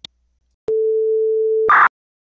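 Electronic logo-sting sound effect: a single steady mid-pitched beep lasting about a second, cut off by a short loud burst of static-like noise.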